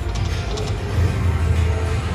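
African Diamond video slot machine playing its free-games music as the reels spin, over a steady low hum.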